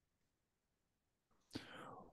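Near silence, then a faint breathy vocal sound about one and a half seconds in, like a quiet intake of breath before speaking.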